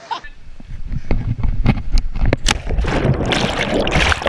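Water splashing and churning close to the microphone, with scattered knocks. It grows louder and hissier about three seconds in.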